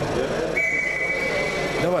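Referee's whistle blown once, a steady high-pitched tone lasting just over a second, signalling the start of a wrestling bout.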